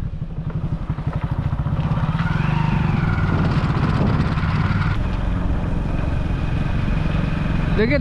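Motorcycle engine running steadily at cruising speed, heard from the rider's seat, its low exhaust note pulsing evenly. A faint thin high tone sits over it in the second half.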